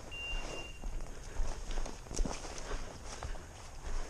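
Footsteps of a person walking through dense scrub: boots on stony dirt and branches brushing past, in uneven steps, with one louder step or snap about two seconds in.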